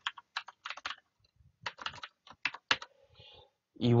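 Typing on a computer keyboard: irregular keystrokes in short runs, with a pause of about half a second a little after one second in.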